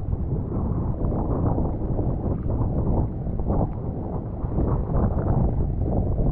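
Wind buffeting the action camera's microphone: a steady low rumble that surges and eases with the gusts.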